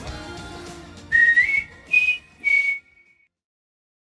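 Background music fades away, then three short whistled notes sound as a closing jingle. The first note slides up in pitch, the second is the highest, and the third trails off faintly.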